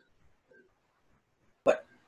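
A pause in talk, near silent for most of its length, broken near the end by one short, sharp intake of breath just before the speaker starts talking again.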